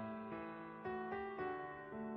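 Slow, soft keyboard instrumental: sustained piano-like notes, a new note or chord struck about every half second over a held low note.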